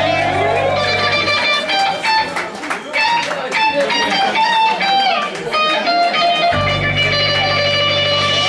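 Live rock band with an electric guitar playing a run of short single notes. The heavy low backing drops out about a second and a half in and comes back in about six and a half seconds in.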